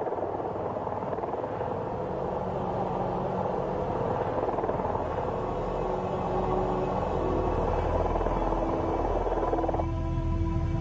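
Helicopter rotor chopping steadily, a dense rapid beating that cuts off just before the end. Music with held low notes and a deep drone comes in under it from about halfway through.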